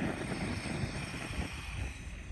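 Portable gas-cartridge camping stove: a steady hiss of gas starts suddenly as the valve is opened, and the burner catches alight.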